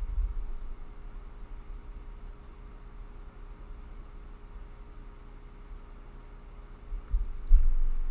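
Quiet room tone with a steady low electrical hum. Dull low thumps, like bumps against the desk or microphone, come right at the start and again near the end.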